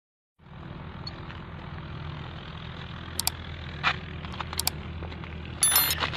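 A small vehicle engine running steadily with a low hum. A few sharp clicks are heard partway through, and a louder, ringing burst comes near the end.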